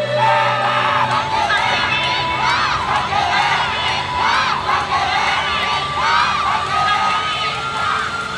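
Many voices of yosakoi dancers and onlookers shouting and cheering together, lots of high voices overlapping, as the dance music stops at the start.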